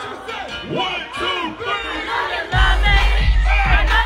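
Concert crowd shouting and singing along over the PA. About two and a half seconds in, a loud, heavy bass beat drops in under the crowd's voices.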